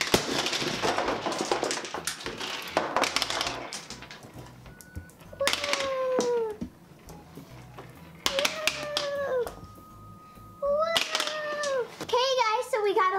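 A giant latex balloon pops with a sharp bang, followed by a few seconds of toys and candy clattering and scattering across a tabletop. After that come three drawn-out sliding tones, each about a second long, a few seconds apart.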